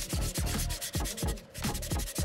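Sanding block rubbed back and forth over the dried filler coat on a 3D-printed plastic plant pot, a dry rasping in quick strokes about four a second, smoothing the surface.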